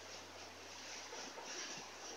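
Faint room tone with a steady low hum; no distinct sound stands out.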